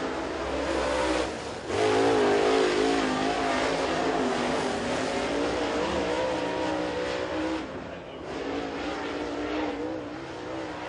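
Dirt late model race car's V8 engine running hard at speed on a qualifying lap. The note drops away briefly twice: about two seconds in and again near the end.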